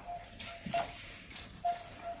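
A few short sharp clicks, one of them a game clock's button pressed after a Go move, with short repeated dashes of a single mid-pitched tone.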